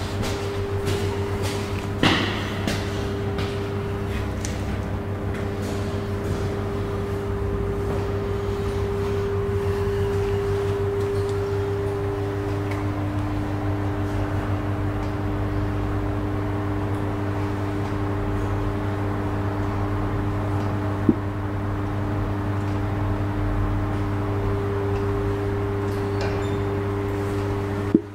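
Kristianstad Hiss & El hydraulic elevator travelling between floors: a steady machine hum with a tone that steps lower about halfway through and returns near the end. A few clicks and a knock come about two seconds in, and a single sharp click a few seconds before the end.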